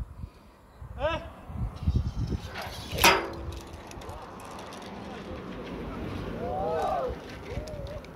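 Rope jump off a bridge: a yell about a second in, a single sharp crack about three seconds in, then a swelling rush of noise with whooping calls near the end.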